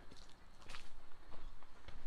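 A person's footsteps: a few soft, irregular steps and scuffs while walking up to a doorway.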